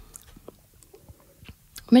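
A quiet pause with a few faint, short clicks close to the microphone, then a woman starts speaking right at the end.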